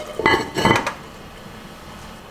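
Heavy lid of an enamelled cast-iron cocotte being set down on the pot, clanking twice with a brief metallic ring within the first second. A low steady background follows.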